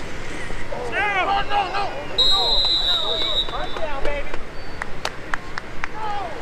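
Referee's whistle blown once, a steady shrill note lasting just over a second, blowing the play dead, amid shouting voices from the field and sideline. A few sharp clicks follow near the end.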